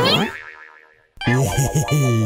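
Cartoon boing sound effect: a springy, wobbling twang that dies away within about a second. After a brief silence a loud cartoon sound with a low wavering tone comes in.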